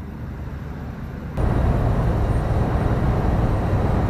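Faint street ambience, then about a second and a half in a sudden cut to the steady engine and road noise of a lorry driving at motorway speed, heard from inside the cab.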